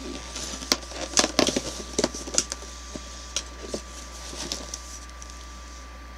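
Cardboard and paper of an advent calendar crinkling and clicking as a door is torn open and a small item is worked out of it. Quick crackles come thick for the first couple of seconds, then thin out to a few scattered clicks.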